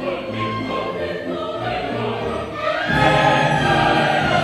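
Opera chorus singing with the orchestra in a live staged performance, swelling louder about three seconds in.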